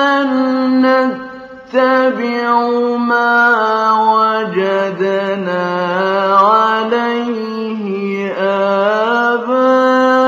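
A male Quran reciter's voice in mujawwad style: long, held, melodic phrases with ornamented turns in pitch, with a short breath about a second in.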